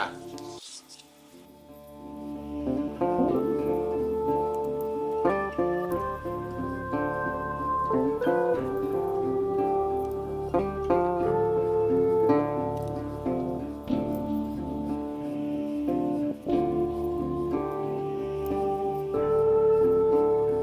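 Instrumental background music with a steady melody of distinct notes, fading in over the first couple of seconds.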